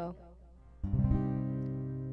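An acoustic guitar chord strummed once, a little under a second in, and left to ring, slowly fading.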